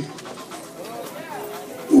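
A church congregation's voices murmuring and calling out in prayer in a large hall, with faint rising and falling vocal tones.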